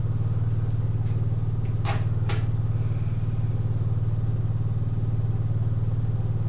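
Steady low droning hum with a fine, even pulsing texture. Two soft clicks come about two seconds in.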